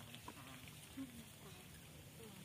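Faint, brief calls from a long-tailed macaque: a couple of short pitched sounds near the start and again about a second in.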